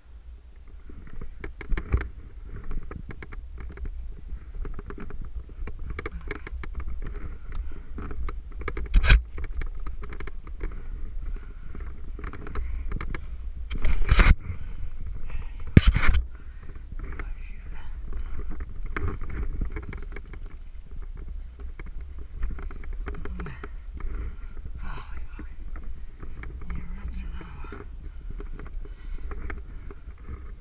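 A climber's movement noise picked up by a head-mounted camera while climbing a finger crack: a steady low rumble of wind and handling on the microphone, with small scrapes of hands against the rock. Three loud knocks stand out, one about nine seconds in and two close together around the middle.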